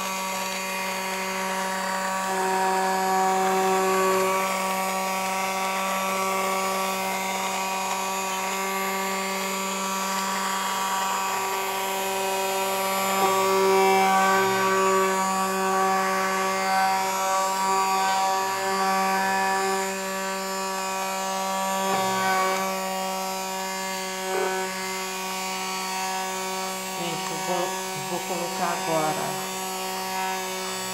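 Handheld electric stick blender running continuously with a steady motor whine while blending thick soap batter of oil and caustic-soda solution, its pitch and level shifting slightly as it is moved through the mixture.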